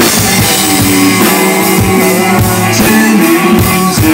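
Live country rock band playing loud: electric guitar, bass and drum kit at a steady beat.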